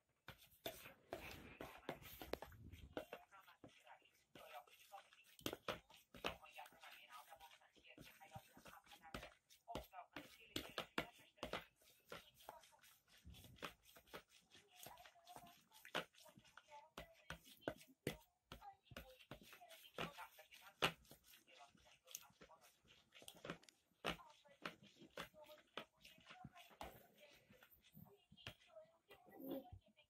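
A metal spoon beating raw eggs in a plastic bowl: quick, irregular clicks and scrapes of the spoon against the bowl's sides and bottom, several a second.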